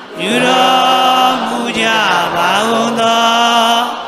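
Buddhist chanting: a voice holding long, steady notes, each phrase sliding down in pitch at its end, about three phrases in a row.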